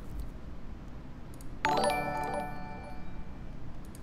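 An electronic notification chime sounds once about a second and a half in: a bright bell-like chord that rings and fades out over about a second and a half, over low room tone.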